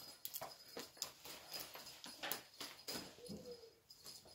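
A cat playing with a Christmas tree toy on a laminate floor: irregular rustles, scratches and light taps from the toy and its claws. A brief low tone comes a little after three seconds in.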